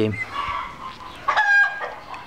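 Domestic fowl calling: a faint call near the start, then one loud, steady-pitched call about half a second long, a little past the middle.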